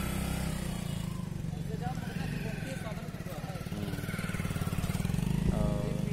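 A small engine running close by with a steady low pulse, growing louder near the end, with people talking in the background.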